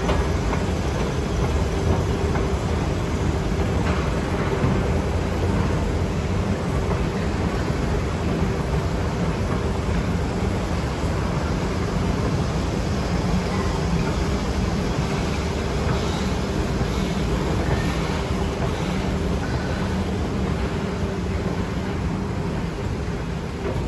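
Westinghouse escalator running, heard from on the moving steps: a steady low rumble with a constant hum.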